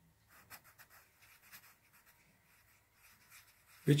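Pencil writing on a paper page: a run of faint, short scratching strokes of the graphite as a word is written, mostly in the first two seconds.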